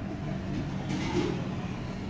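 Steady low background hum, with a brief rustle about a second in.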